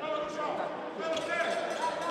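A handball being bounced on an indoor sports hall floor, with players' voices and calls echoing in the hall.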